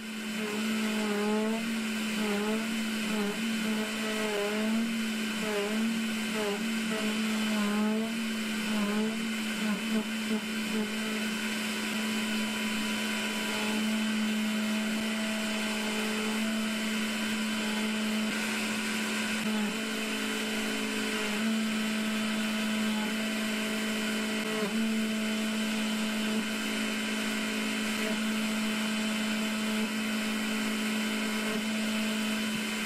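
Makera Z1 desktop CNC mill's spindle turning at about 13,000 rpm while a 6 mm single-flute end mill cuts a pocket in aluminium. The hum is steady, but it dips briefly in pitch about once a second over the first ten seconds as the cutter takes load, then holds mostly steady with a few dips near the end.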